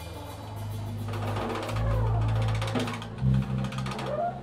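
Live instrumental band of trombone, electric bass and drum kit playing. The drums play a fast roll through the middle over held bass notes, with a heavier hit near the end.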